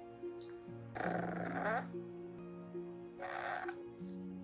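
Bulldog puppy 'talking': two short vocal sounds, a longer one about a second in and a shorter one near the end, over background music.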